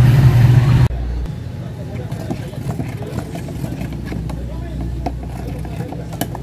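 White epoxy enamel being stirred in a metal gallon paint can, with faint scrapes and small taps, over a steady low rumble and faint background voices.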